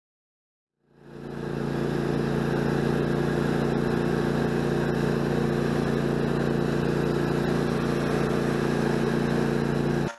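Riding lawn mower's engine running at a steady speed while driving, fading in about a second in and cutting off sharply at the end.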